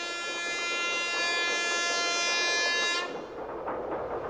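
Train horn sounding one long, steady blast that cuts off about three seconds in, leaving a fainter background noise.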